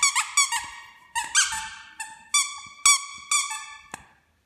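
Squeaky plush dog toy squeaked about ten times in quick clusters, each a shrill squeal with a short dip in pitch as it starts. A sharp click comes just before the end.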